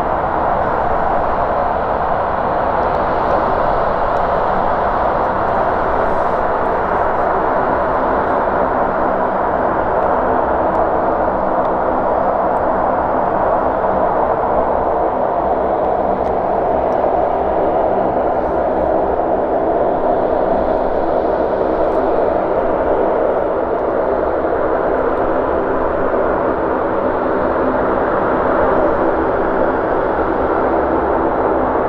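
Lockheed C-130 Hercules turboprop engines running steadily: a constant, unchanging drone with a stack of steady propeller and engine tones.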